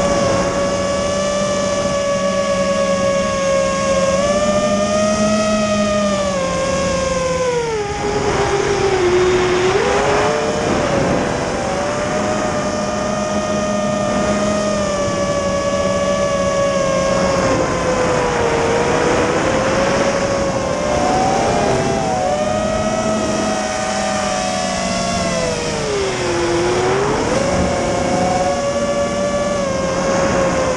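Electric motors and propellers of a 6-inch FPV racing quadcopter (XNova 2206 2000 kV motors, HQ 6x3x3 props), heard from the camera on the drone: a steady whine whose pitch rises and falls with throttle. The pitch drops sharply about eight seconds in and again around twenty-six seconds, then climbs back.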